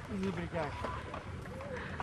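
Short wordless vocal sounds from a person's voice, rising and falling in pitch, over steady outdoor background noise.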